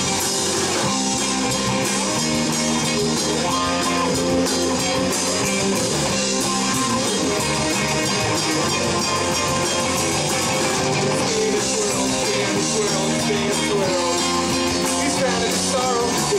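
Live rock band playing: electric guitar and bass guitar over a drum kit, at a steady beat.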